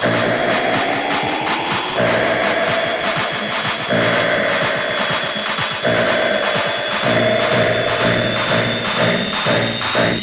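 Electronic dance music from a DJ set played loud through a club sound system: a fast, dense rhythm with a synth line rising over the first two seconds and a long held high tone above it.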